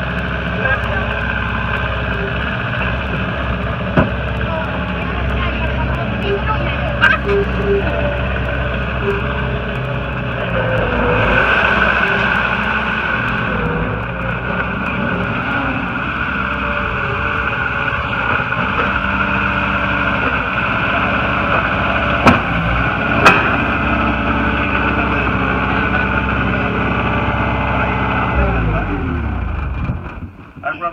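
New Holland LS170 skid steer loader's turbocharged diesel engine running steadily under load as it is driven, swelling louder for a couple of seconds about a third of the way in. There are a few sharp metal clanks, two of them about a second apart past the two-thirds mark, and the engine speed falls near the end.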